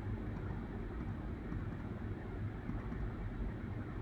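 Steady low background noise, a rumble with a faint hiss and no distinct events.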